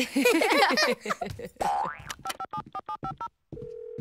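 Cartoon sound effects of a toy-like cell phone being played with: bouncing boing-like tones, a quick rising sweep, a fast run of about eight beeps like keypad presses, then a steady dial tone.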